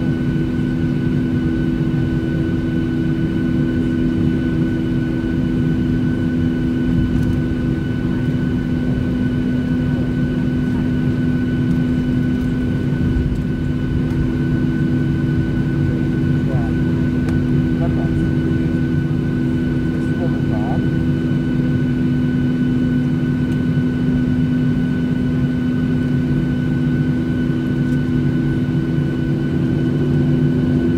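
Boeing 737-600's CFM56-7B jet engines at taxi power, heard inside the cabin: a steady low rumble with a constant engine whine.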